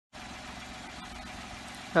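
Peugeot 107's 1.0-litre three-cylinder petrol engine idling, low and steady. A man's voice begins at the very end.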